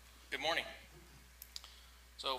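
A short spoken word from a voice picked up by the meeting-room microphone, then two faint clicks about a second later, over a steady low hum.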